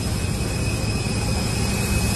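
Jet aircraft running close by: a steady rumble with a constant high whine over it.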